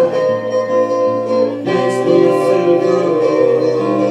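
A solo guitar played live, held notes ringing, with a change of chord about one and a half seconds in.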